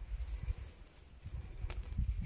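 A gloved hand working loose garden soil: faint scrapes and a couple of small clicks over a low rumble.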